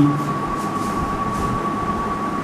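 Steady room noise with a constant high-pitched whine, under a few soft strokes of a marker writing on a whiteboard.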